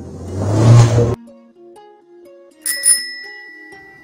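Editing sound effects under soft background music: a noisy whoosh swells and cuts off suddenly about a second in. Near three seconds a bright bell-like ding sounds and rings on to the end.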